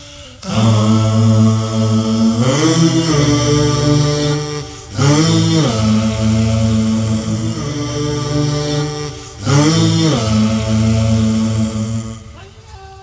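Deep vocal chant on the film's soundtrack: a low voice holding long, steady notes in three long phrases, each opening with a pitch that swoops up and falls back.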